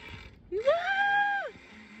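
A high-pitched, excited "woo" cry, held for about a second, rising at the start and falling away at the end, after a brief hiss of noise.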